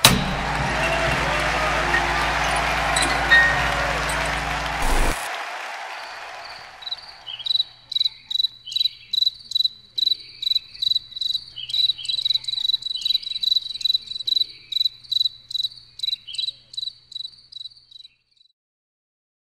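A club crowd's noise over a held low bass note; the bass cuts off abruptly about five seconds in and the crowd fades away. Then a cricket chirps steadily, two to three high chirps a second.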